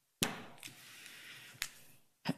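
A sharp click, then a soft hiss that fades, then a second click about a second and a half later.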